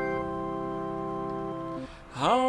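Digital keyboard playing a hymn accompaniment, holding a steady chord between sung lines; the chord is released shortly before the end.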